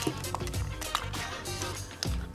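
Background music with steady low held tones, and two faint short clicks in the first second.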